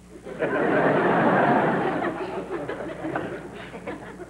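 Audience laughing: the laughter swells about half a second in and dies away over the last couple of seconds.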